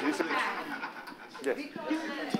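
Indistinct speech: voices talking that the recogniser could not make out into words.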